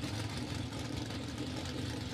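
Pro Stock drag car's 500-cubic-inch V8 idling steadily, heard at a distance.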